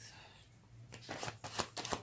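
A deck of playing cards being shuffled by hand: a quick run of sharp card flicks and snaps begins about a second in.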